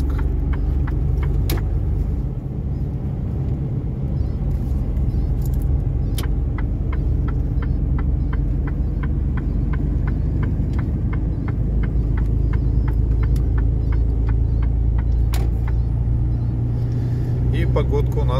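Truck engine droning steadily as heard inside the cab while driving. Through the middle there is a run of quick, evenly spaced ticks.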